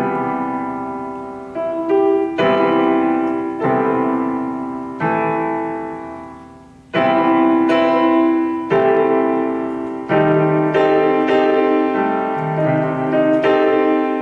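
Piano voice on an electronic keyboard: two-handed chords, each struck and left to ring. A chord fades out slowly through the middle before a new one comes in about halfway, and after that the chords change more quickly.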